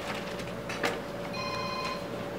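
An electronic ringing tone, made of several steady high pitches, starts a little past halfway and keeps going. Beneath it are quiet room noise and one soft knock.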